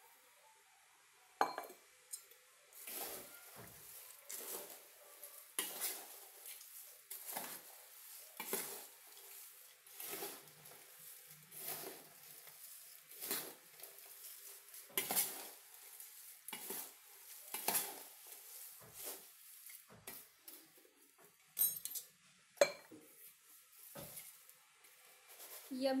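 A metal spoon tossing dry chivda (fried poha, peanuts, cornflakes) in a large steel plate: a run of rustling, scraping strokes every second or so, with a few sharp clinks of metal on steel.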